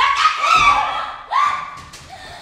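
A woman's high, excited cries, two of them about 1.3 seconds apart, each rising in pitch, with a low thud about half a second in.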